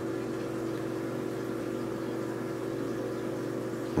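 A steady low mechanical hum, unchanging throughout, with no other events.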